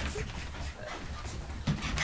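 A pug dashing about excitedly, heard as faint movement and breathing, with a short louder sound near the end.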